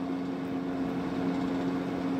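A steady mechanical hum with a few fixed low tones, like a motor or fan running, unchanging throughout.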